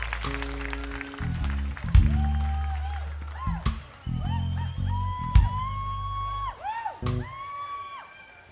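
Live band music: an electric bass guitar playing a deep line of held notes, with drum hits roughly every second and a half and a higher melodic line that slides up and down between notes.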